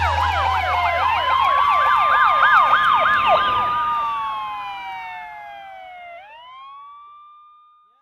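Emergency-vehicle sirens: a fast yelp rising and falling about three times a second over slower wailing tones, with a low bass note fading out about three seconds in. The sirens then slide down in pitch, one swoops back up about six seconds in, and they fade away just before the end.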